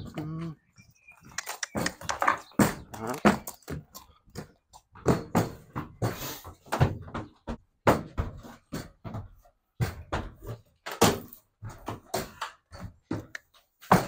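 A horse's hooves knocking and thudding on a horse trailer's ramp and floor as it is loaded, in a string of irregular sharp knocks.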